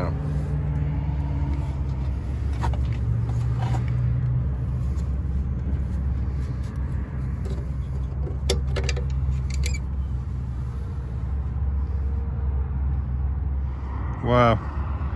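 A vehicle engine idling with a steady low hum, and several sharp plastic clicks as a 9006 headlight bulb is twisted out of its housing and unplugged from its connector.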